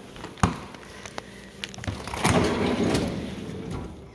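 Stainless Whirlpool refrigerator: a door shuts with a knock about half a second in, followed by a few light clicks. Then the bottom freezer drawer slides open on its runners with a rough rumbling for about a second and a half.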